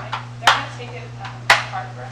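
Scoop stretcher being split into its two halves: sharp plastic clacks as its latches release and the halves knock together and onto the floor, the two loudest about a second apart.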